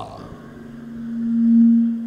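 A single low, steady sustained tone that swells to its loudest about one and a half seconds in, then eases, over a faint hiss.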